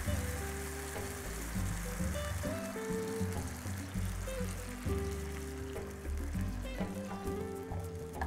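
Background music with held notes over a bass line. Beneath it, orange juice is poured into a hot skillet of frying fish and sizzles and hisses in the oil.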